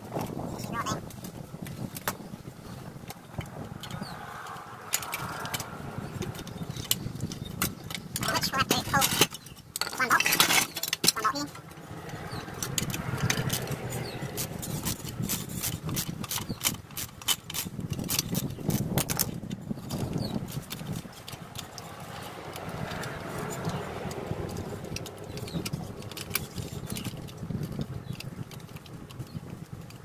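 Metal hand tools clicking and clanking against a ride-on mower's transaxle and frame, a string of sharp knocks with a louder clatter about ten seconds in.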